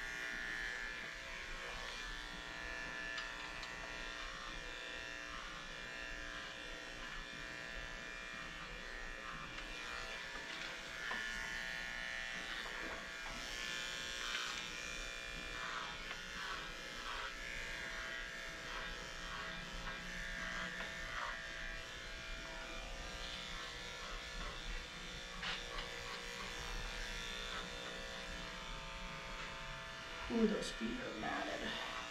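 Electric dog grooming clippers running steadily as the blade shaves through a heavily matted coat, with short scratchy cutting strokes through the mats around the middle.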